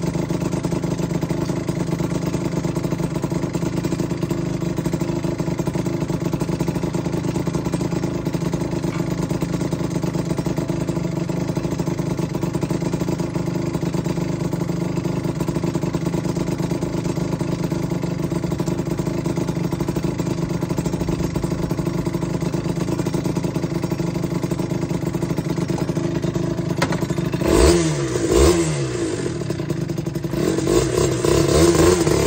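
Yamaha TZR two-stroke motorcycle engine idling steadily while the bike stands, then revved twice near the end, its pitch sweeping up and falling back each time.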